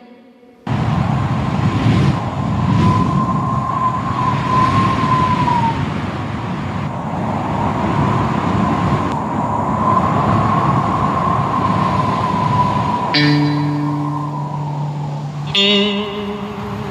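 Instrumental intro of a Vietnamese karaoke duet backing track: a slowly wavering high tone held over a rushing wash, with steady low held notes coming in near the end.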